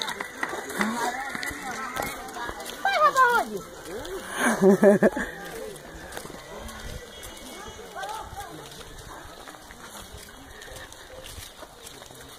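Indistinct voices calling out on the move, loudest in a call about four to five seconds in, then quieter voices and outdoor noise.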